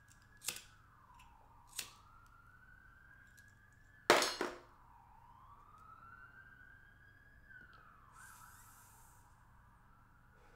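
A siren wailing faintly, its pitch slowly rising and falling twice. Over it come sharp knocks: one about half a second in, one near two seconds, and a louder double knock around four seconds.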